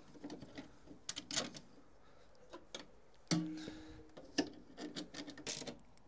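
Scattered clicks and knocks of a 3D-printed plastic duct piece being handled and pushed into place in a car's front body panel, with a brief low tone about three seconds in.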